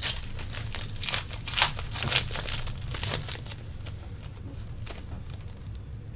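A trading-card pack wrapper being torn open and crinkled by hand: a quick string of crackly rustles over the first three seconds or so, then quieter handling.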